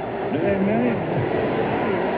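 Steady basketball-arena crowd noise, with a man's voice calling out once, briefly, about half a second in.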